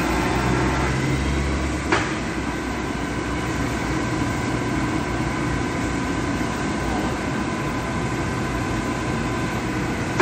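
Cincinnati Bickford radial arm drill running: a steady mechanical hum with a faint whine, and a single sharp clunk about two seconds in, after which the deep hum drops away.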